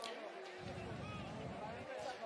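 Faint baseball stadium crowd murmur with a few distant voices.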